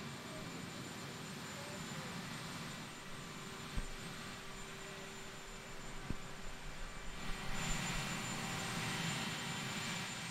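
Marine One, a Sikorsky VH-3D Sea King helicopter, idling on the ground with its rotors still: a steady turbine whine with a thin high whistle, growing louder about three-quarters of the way in. Two brief knocks are heard near the middle.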